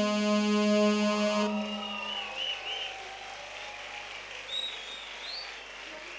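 The band's final keyboard chord of the song held and fading out over the first two seconds, followed by a crowd's cheering and a few wavering whistles.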